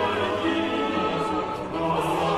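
Background music: a choir singing classical choral music in long, sustained chords.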